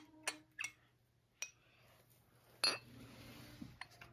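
Pieces of a plastic toy tea set tapping and clinking together: a handful of light, separate clicks, the loudest a little past halfway through.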